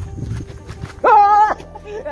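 Rumble of wind and handling on a phone microphone as the phone swings. About a second in, one loud, high, held call lasts about half a second.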